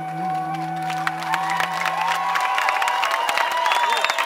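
A live band's last held notes fading out, while audience applause and cheering start about a second in and grow to take over.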